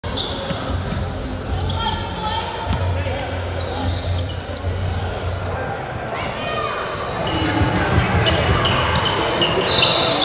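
Basketball being dribbled on a hardwood gym floor, with many short, high sneaker squeaks from players moving on the court and voices in the background.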